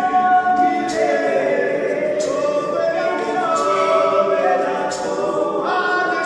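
A small group of men singing a cappella in harmony, several voices holding long, gliding notes together.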